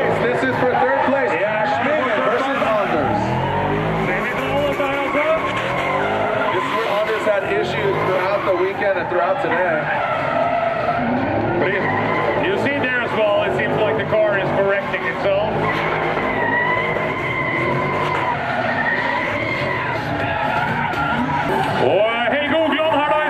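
Drift cars sliding sideways through a corner, engines revving up and down hard while the tyres squeal, with a longer steady tyre squeal toward the end.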